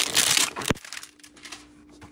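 Paperboard of a Select basketball card hanger box being torn open: a rasping tear in the first half second, then a single sharp click.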